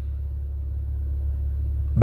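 A steady low hum, unchanging throughout, with faint hiss above it.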